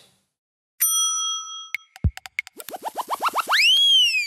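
Television transition sound effect: a ringing ding held for about a second, a few sharp clicks and a low thump, then a quickening run of short rising chirps that builds into one long rising and falling zing.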